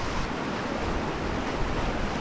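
Steady rush of a small mountain stream cascading down a granite chute into a plunge pool.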